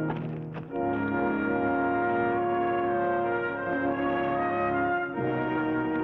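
Orchestral background score led by brass, holding long sustained chords that change about a second in and again near the end.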